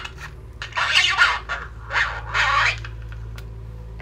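A few rough scraping, ripping strokes, the longest about a second in and two shorter ones near the middle, as the stitching of a cloth-bodied doll is cut open with a small pointed tool. A steady low hum runs underneath.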